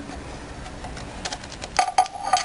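A few light clicks, then near the end a couple of sharp metallic clinks that ring briefly: a small metal object handled and set down on a hard surface.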